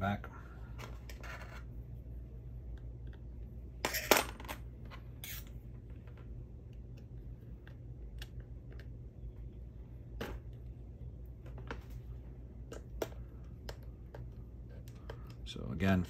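Small metal wheel hardware clicking and clinking as it is handled and fitted onto an RC crawler's rear axle: scattered light clicks, the sharpest few about four seconds in, over a steady low hum.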